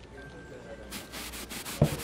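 Broom bristles sweeping a hard floor in short brushing strokes, played as a sound effect, with a couple of soft thumps near the end.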